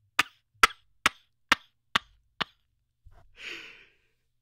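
Six short, sharp knocks at an even pace of about two a second, followed about a second later by a brief breathy exhale.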